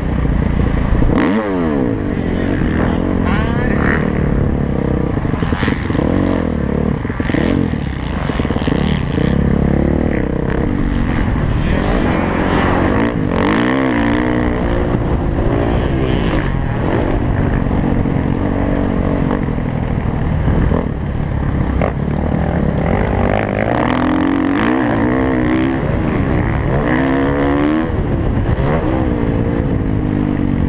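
Motocross dirt bike engine heard from the rider's helmet camera, revving up and falling back again and again as the throttle is opened and closed and the rider shifts along the track. Short knocks now and then break through the engine sound.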